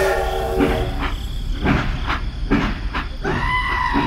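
Toy steam train's electronic sound effect: a run of chuffs about two a second, then a long, steady steam-whistle tone starting about three seconds in.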